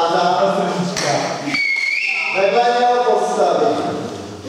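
A man's voice speaking, broken about a second and a half in by one short, high whistled note that rises slightly and then holds for about half a second.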